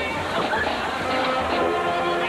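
High school marching band playing on the field: sustained ensemble chords with drum beats underneath.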